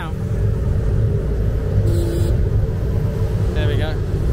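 Engine and road rumble of a songthaew pickup truck, heard from its open rear passenger bed as it drives along, with a brief hiss and a short low tone about halfway through.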